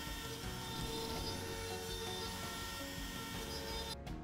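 Background music over a CNC router spindle running steadily as it cuts wood, its whine and hiss heard faintly beneath the music.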